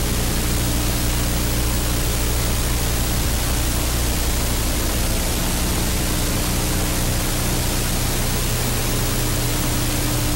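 Steady hiss with a low electrical hum underneath, the background noise of an old film soundtrack, unchanged throughout.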